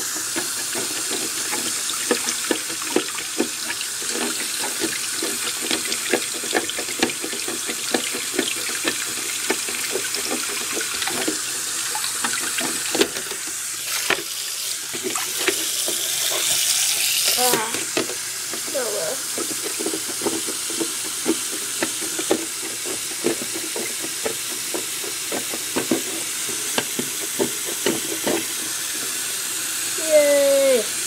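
A tap running into a bathroom sink while a plastic Lego base plate is rinsed and rubbed under the stream, with frequent small clicks and knocks of the plate. The water gets louder for a few seconds about halfway through.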